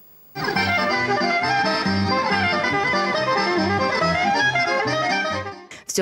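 Button accordion playing a jazz tune, melody over pulsing low bass notes. It starts about a third of a second in and fades out near the end.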